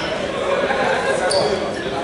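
A basketball bouncing on the gym's hardwood floor during a free-throw setup, under people talking in the gym, with one short high squeak a little past halfway.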